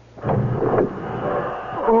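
Radio-drama sound effect of a railway compartment door being opened: a short, loud, noisy rattle about a quarter second in that fades off over the next second.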